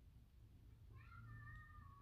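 Near silence, with a faint, high, drawn-out cry starting about a second in and lasting about a second, rising briefly at its onset.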